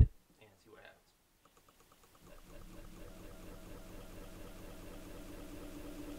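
Near silence, then from about two seconds in a faint, rapid stutter of played-back audio: a tiny fragment looping over and over, slowly swelling in level. This is an audio playback glitch repeating the same bit of sound.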